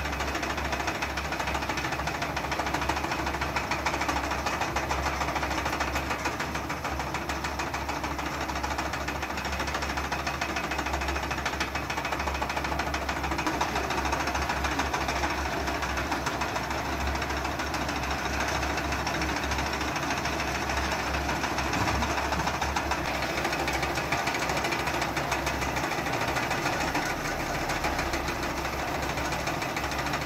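Small electric wool-spinning machines running steadily: a continuous motor hum with a fast, even rattle as the spindles turn and twist raw wool into yarn.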